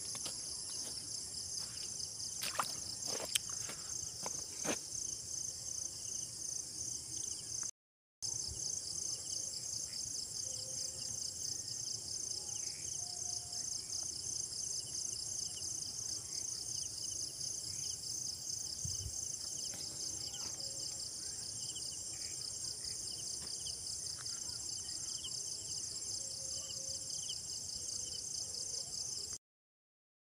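Steady chorus of insects at dusk, a high, evenly pulsing trill, with a few sharp clicks in the first five seconds. The sound drops out briefly about eight seconds in and stops just before the end.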